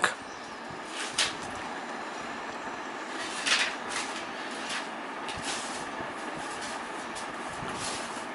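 Steady background hiss with a few soft clicks and knocks, the loudest about three and a half seconds in: a smartphone being handled and turned in the hands as its screen is tapped.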